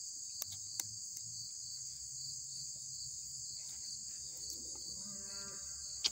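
Steady high-pitched chorus of insects in the grass, with a few faint clicks near the start as a small pocket multi-tool is handled.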